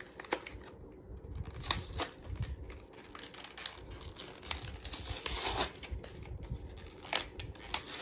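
A new pack of highlighters being opened by hand: plastic packaging crinkling and tearing, with irregular sharp clicks and crackles.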